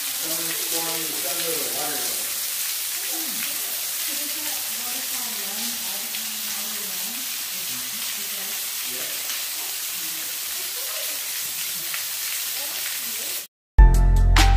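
Water showering down from a cave ceiling in many drips, a steady rain-like hiss, with faint voices murmuring underneath. It cuts off suddenly near the end and music begins.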